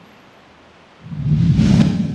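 News-programme transition sound effect: a loud whoosh with a deep low rumble that swells about a second in, after a second of faint hiss.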